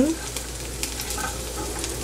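Rice-flour-coated shrimp frying in shallow oil in a nonstick pan: a steady sizzle with small crackles, stirred with a metal slotted spoon.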